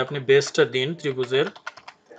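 Typing on a computer keyboard: a quick run of key clicks in the last half second.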